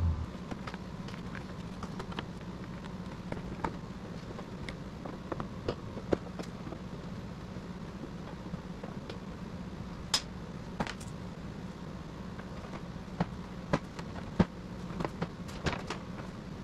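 Scattered clicks and snaps of plastic push-pin retainer clips being pried out of a pickup's radiator cover, over a steady low hum. The sharpest snaps come about six, ten and fourteen seconds in.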